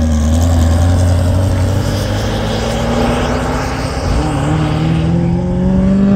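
Engine of a 1975 International pickup pushing a land speed race car off the start line. From about four seconds in, an engine's pitch rises steadily as it gathers speed.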